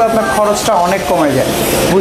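A man talking, with a rubbing, scratchy noise near the end.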